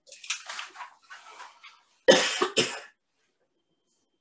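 Soft rustling, then a man coughing twice in quick succession about two seconds in.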